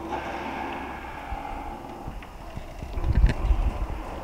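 Electric garage door opener running as a wooden garage door opens, a steady motor hum with some light knocks from the moving door. A louder low rumble comes about three seconds in.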